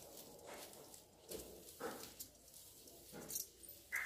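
Grass broom sweeping a tiled floor: a handful of short, soft swishes of the bristles across the tiles, spaced irregularly.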